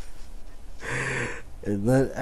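A man laughing breathily: a sharp gasp of breath about a second in, then a voiced laugh starting near the end.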